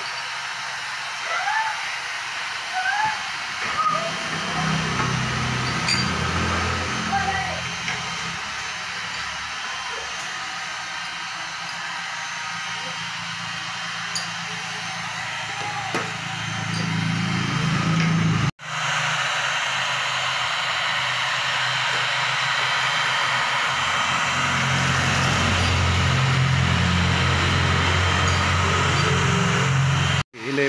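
Handheld electric heat gun blowing steadily, flash-drying a freshly screen-printed coat of ink on a T-shirt; it is loudest and most even in the last third.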